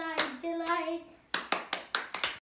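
Hand-clapping game: palms slapping together, one clap just after the start and then four quick claps in the second half, about five a second. In the first second a voice sings two held notes of the clapping rhyme.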